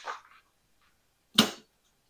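A single sharp knock about one and a half seconds in, as a portable folding solar panel is handled and lowered.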